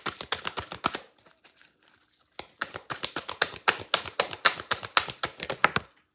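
A deck of oracle cards being shuffled by hand: rapid trains of papery clicks as the cards slap together, stopping for about a second, then starting again and running until just before the end.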